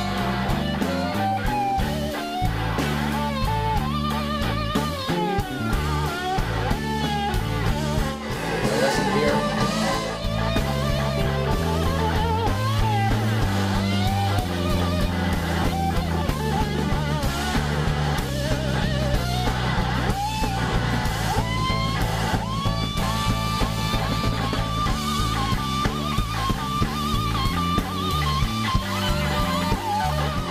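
Live band music: an electric slide guitar (a red Gibson SG) soloing over drums and band at the climax of the solo, its notes gliding and bending between pitches. About two-thirds of the way in it settles on a long, held high note.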